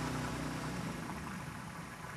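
Small aluminium boat's outboard motor idling steadily, a low, even engine sound.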